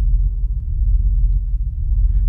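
A steady low rumble with a faint hum, no distinct events.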